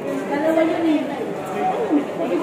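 People talking: speech and chatter from voices that the recogniser could not make out as words.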